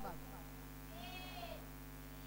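Low, steady electrical hum from the microphone's sound system. A faint, short pitched call rises and falls about a second in.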